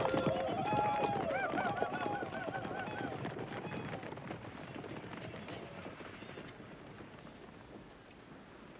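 Galloping horses and their riders' warbling, yipping war cries, the cries fading out after about three seconds and the hoofbeats dying away as the band rides off.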